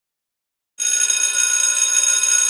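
Electric school bell ringing: a steady, high ring that starts suddenly out of silence about a second in.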